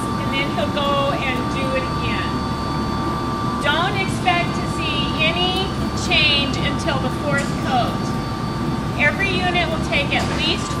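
Indistinct talking in bursts over a steady low machine hum, with a faint steady whine running through it.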